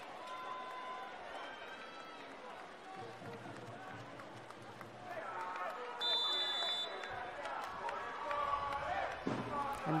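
Low murmur of crowd voices in an indoor sports hall. About six seconds in, a referee's whistle sounds once for about a second, the signal for the serve.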